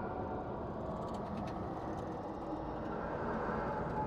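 Steady, even background noise with a faint sustained hum underneath, holding level throughout.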